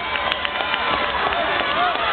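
Stadium crowd of many voices shouting and talking over one another, with a couple of sharp knocks near the start.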